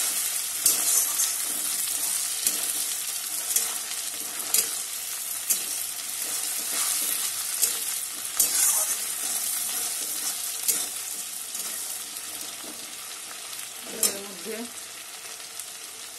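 Sliced onions, tomatoes and whole spices sizzling in hot oil in a metal kadai, stirred with a metal spatula that scrapes and knocks against the pan every second or so. The sizzle eases gradually and the scrapes come less often toward the end.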